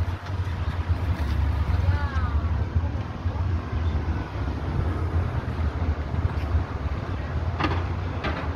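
Low, steady outdoor rumble of background noise. A faint voice is heard about two seconds in, and a short sharp knock comes near the end.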